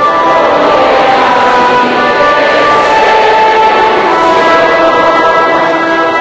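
Large congregation singing a slow hymn together, long held notes moving from one pitch to the next, blurred by the reverberation of a big hall.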